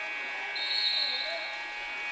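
Gym scoreboard buzzer sounding one long steady tone as the game clock hits zero, marking the end of the quarter. A short, high referee's whistle sounds over it about half a second in.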